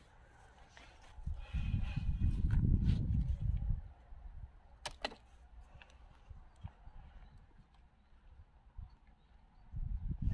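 Handling noise as a raspberry plant is worked out of its plastic nursery pot: a low rumble with rustling about one to four seconds in, then a sharp click about five seconds in and a few faint knocks.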